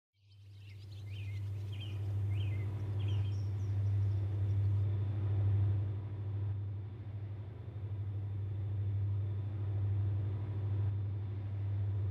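Outdoor ambience that fades in: a few short bird chirps in the first three seconds or so over a steady low rumble.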